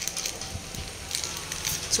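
Cooked biryani rice being tipped out of a pressure cooker into a steel bowl while a spoon scrapes through it, a soft irregular crackling rustle.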